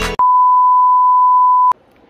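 A loud electronic beep: one steady pure tone held for about a second and a half, starting just as the intro music stops and cutting off suddenly.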